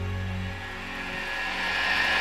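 Quiet passage of a live rock band performance: sustained low synth tones fade out, then a hissing swell rises steadily, building up toward a loud section.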